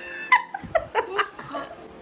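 Laughter: a quick run of short laughs lasting about a second and a half, then it dies down.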